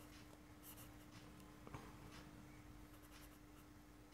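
Faint strokes of a marker pen writing on paper.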